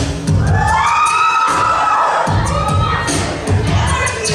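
A cappella pop intro: a vocal percussionist's beatboxed bass and drum beat under a group of backing singers sliding into and holding chords.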